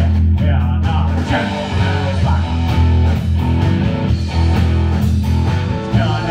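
Live rock band playing an instrumental passage: electric guitar over a drum kit and an electric upright bass, with steady drum hits and a strong bass line.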